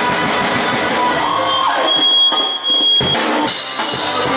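Live indie/post-punk rock band playing: electric guitars, bass and drum kit. Just past the middle the drums stop for about a second under one high held note, then the full band comes back in.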